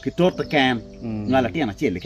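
A man speaking in Acholi, in short phrases with brief pauses between them.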